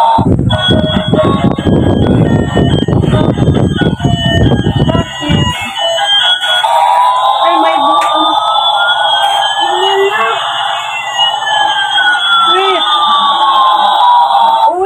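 Battery-powered light-up toy airplane playing electronic sound effects: a steady high tone with slow siren-like pitch glides, one rising and one falling, that cross near the end. A low rattling noise runs under it for about the first five seconds, then stops.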